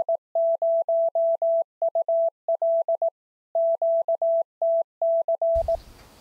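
Morse code sent as a clean single-pitch beep: a fast run of short and long tones with a brief pause about halfway, stopping shortly before the end.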